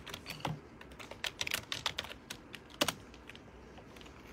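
Typing on a keyboard: irregular key clicks, a quick run of them in the middle and one harder click about three seconds in.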